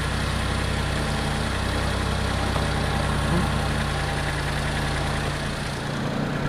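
Mitsubishi eK Sport's three-cylinder engine idling steadily with the air conditioning switched on.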